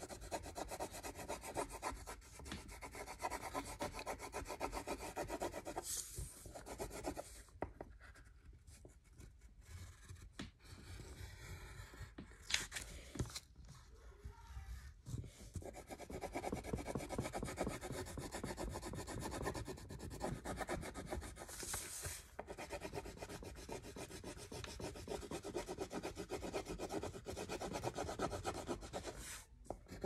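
A coloured pencil scribbling quickly back and forth on paper on a tabletop, in rapid scratchy strokes, easing off for several seconds in the middle. A few short rustles of the paper as it is shifted.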